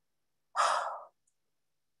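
A person's audible breath into the microphone, one short breath of about half a second, taken in a pause between phrases of speech.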